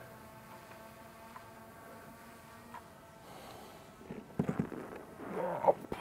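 A quadcopter drone's propellers hum steadily and faintly, and the hum fades out about halfway. Brief indistinct murmuring from a man follows in the last two seconds.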